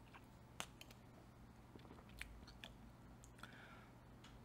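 Near silence, with a few faint mouth clicks and swallowing as soda is sipped from a bottle.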